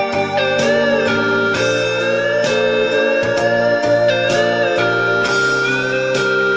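Instrumental break in a slow rock ballad: a lead guitar plays long sustained notes that bend and glide in pitch, over a steady chordal accompaniment.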